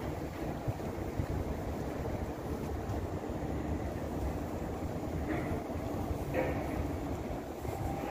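Steady low rumble of wind buffeting the microphone over general harbour noise.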